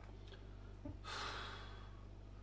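A man exhales in a soft sigh about a second in, a breath lasting about half a second that fades out, over a faint steady room hum.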